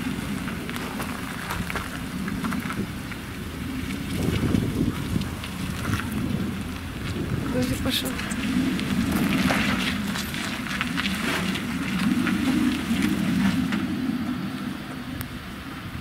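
An SUV towing a loaded trailer drives off and turns around on a wet road: a low engine and tyre rumble that swells and fades, with crackling noise over it.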